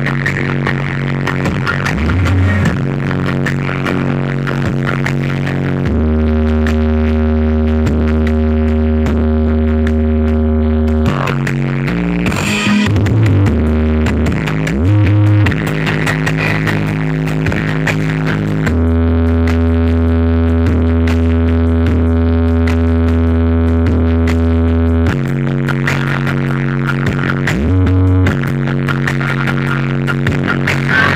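Loud electronic dance music played through a truck-mounted sound system of stacked speaker cabinets with eight subwoofer boxes. It has long held bass notes and a sweeping effect about twelve seconds in.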